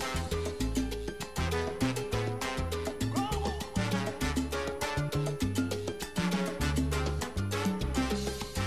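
Salsa music: a bass line stepping from note to note under busy percussion, with a steady beat throughout.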